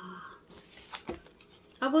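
Cardboard box of Abuelita Mexican chocolate being opened by hand: a short rustle of the cardboard, then a few light clicks and a soft knock.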